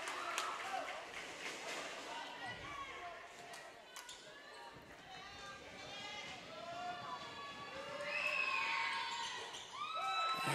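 Gymnasium ambience: scattered crowd and player voices, with a basketball bouncing on the hardwood floor as the free-throw shooter dribbles at the line. The voices grow louder near the end.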